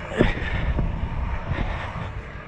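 Stunt scooter's wheels rolling fast over a concrete ramp with a steady low rumble, a sharp knock about a quarter second in and a couple of fainter knocks after it.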